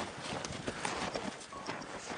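Boots of several people walking through deep snow, a few uneven footsteps a second.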